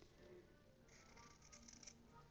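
Near silence, with faint soft snips of scissors cutting through fabric from about a second in.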